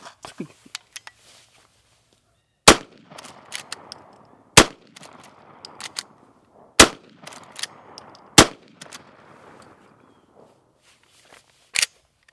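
Four shots from a Henry Axe .410 short-barreled lever-action shotgun, about two seconds apart, each followed by echo, with the lever's clicks as it is worked between shots. A sharp click near the end.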